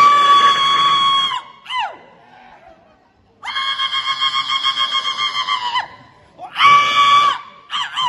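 A man's traditional Naga war cry shouted into a microphone: three long, high-pitched held yells, the middle one longest with a fast warble in it. The first and last each end in a short falling whoop.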